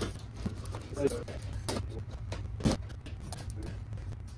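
A few short, sharp metal clicks and scrapes as a hand tool works the metal tabs on the edge of a plywood shipping crate to pry it open, over a low steady hum.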